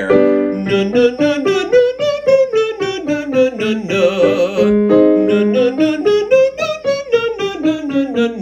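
A man singing a vocal exercise on a 'nou' vowel, as in 'nook', with scale patterns stepping up and down over about an octave and a half, with a digital piano playing along. It is a mix-voice warm-up building toward a high belt.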